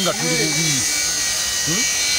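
A man's voice speaking in short phrases over a steady high-pitched buzzing hiss in the background.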